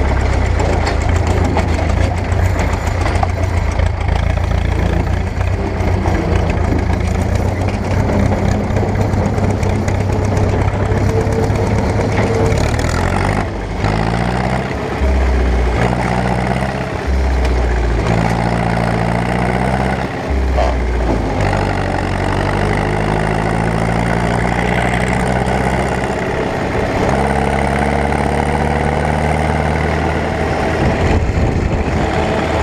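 Farm tractor's diesel engine running at full volume as the tractor drives, a steady low running note that climbs and drops in steps several times from about halfway through, as through gear changes.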